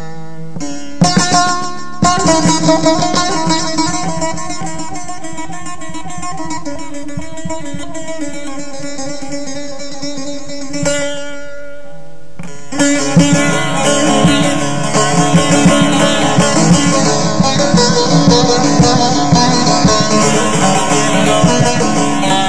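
Bağlama (Turkish long-necked saz) playing an instrumental passage, its plucked notes ringing on. Just past the middle, after a brief dip, the playing turns louder and busier.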